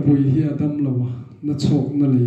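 Speech only: a man preaching in Mizo into a handheld microphone.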